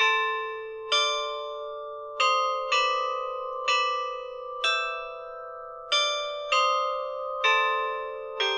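A slow melody played on tuned bells, about one struck note a second, each note ringing on under the next.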